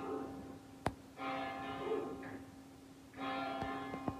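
Phone alarm ringing with a bell-like chime that sounds for about two seconds, pauses briefly and starts again. There is a short click a little under a second in.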